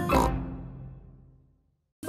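A cartoon pig's snort over the last chord of a children's theme tune. The chord rings out and fades away within about a second and a half.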